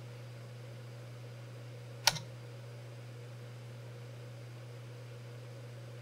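A single sharp keystroke on a computer keyboard about two seconds in, entering the TopShim command, over a steady low electrical hum.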